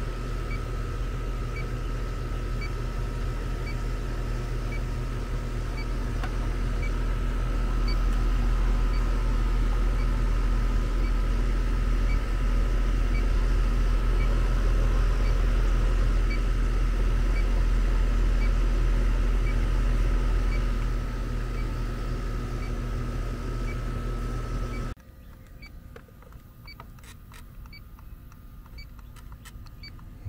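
Inficon D-Tek Stratus refrigerant leak detector ticking slowly and evenly, at its resting rate with no refrigerant detected. It sounds over the steady hum of a running outdoor AC condensing unit, which cuts off suddenly about 25 seconds in, leaving the ticking.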